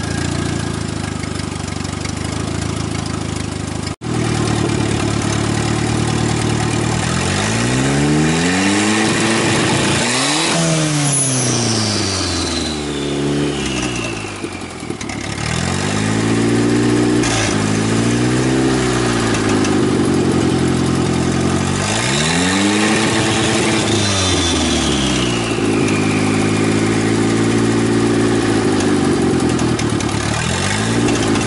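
Turbocharged Mazda F2T 2.2-litre four-cylinder of a 1989 Ford Probe GT idling steadily on a cold engine, then revved up and down several times, the pitch rising and falling with each rev. A high whistle sweeps down after two of the bigger revs as the turbo spools down.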